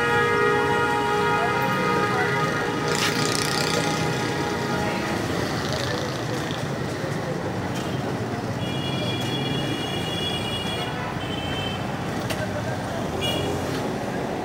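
Busy street traffic with vehicle horns. One horn is held steadily for about the first five seconds; a higher-pitched horn sounds for about two seconds later on and then gives short toots near the end.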